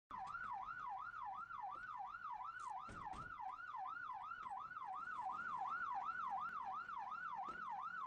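Electronic emergency-vehicle siren with a fast, steady up-and-down warble, about three swings a second.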